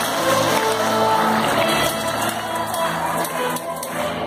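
Symphony orchestra playing, with cellos, double basses and violins sounding held bowed notes that change every half second or so.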